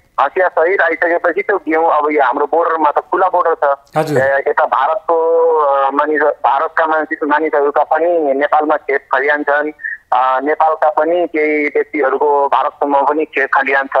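A man talking continuously over a telephone line, with the thin, narrow sound of a phone call; a brief crackle about four seconds in.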